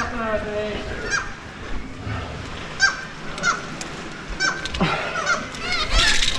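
Black-legged kittiwakes calling at their cliff colony: short calls, one every second or so, crowding into several overlapping calls near the end.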